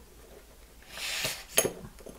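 An RC crawler tyre and its three-piece aluminium rim being worked apart by hand: a soft rubbing about a second in, then a light metallic clink as a rim part is pushed out, followed by a couple of small clicks.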